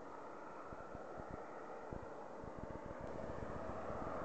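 Road traffic approaching: tyre and engine noise from a truck and a car, growing steadily louder, with wind rumbling on the microphone.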